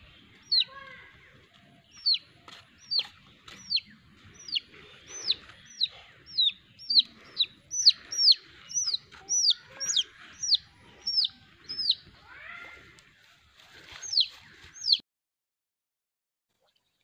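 A chick peeping over and over, loud high calls that each fall in pitch, about two a second, with fainter chirps between them: the distress peeps of a chick held on a string. The calls cut off suddenly about a second before the end.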